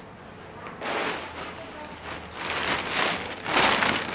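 Plastic packets crinkling and rustling as they are handled and rummaged through. The sound starts about a second in and is loudest near the end.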